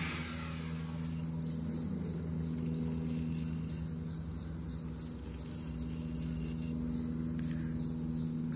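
Insects chirping in a steady rhythm of about three short high pulses a second, over a steady low hum.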